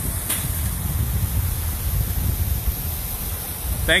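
Wind buffeting the microphone outdoors: an uneven, gusting low rumble with a steady high hiss.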